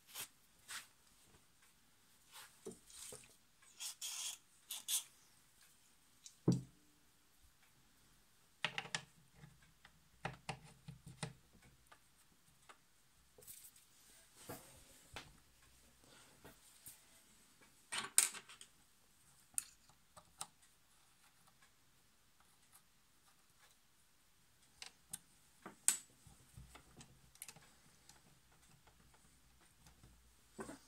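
Scattered light metal clicks and clinks of small steel sewing-machine parts being handled, as a steel bushing is slid onto the machine's bare main shaft and set in place. There is a duller knock partway through, and a few sharper clicks come later.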